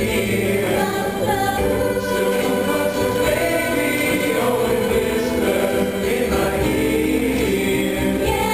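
A large mixed choir of young men and women singing a show tune in full, steady voice.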